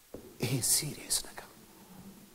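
Soft, whispered speech for about a second, with strong hissing 's' sounds, between pauses.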